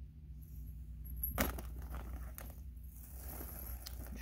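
Costume choker chain and gold jewelry pieces clinking as they are handled, with a sharp click about one and a half seconds in and a few lighter clicks after it. A short rustle comes near the end.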